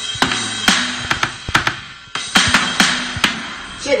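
A drum kit being played: a quick run of drum and cymbal hits, breaking off briefly about two seconds in, then a few more strikes.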